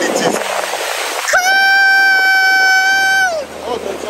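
Small waves washing over the sand, then about a second in a person lets out one long, high, held scream lasting about two seconds, its pitch dropping away at the end.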